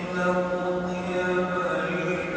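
A man's voice chanting in long, held notes, with the echo of a large domed hall, typical of Islamic recitation inside a mosque.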